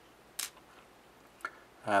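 Near silence in a pause between words, broken by one short hiss about half a second in and a faint click about a second and a half in, before a man's voice starts up again at the end.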